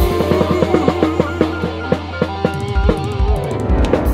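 Instrumental band music with a drum kit playing a fast run of hits over bass and guitar.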